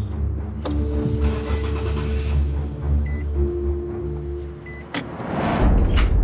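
Tense soundtrack music with long held notes over a heavy low rumble, as of a car's cabin on the move. It swells into a loud rising whoosh near the end.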